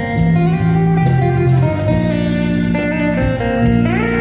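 Amplified acoustic guitar playing an instrumental passage of sustained melodic notes over low bass notes, with a note sliding upward near the end.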